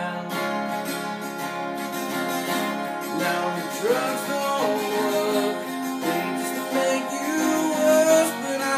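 Acoustic guitar being strummed in a steady rhythm, with a man singing along into the microphone.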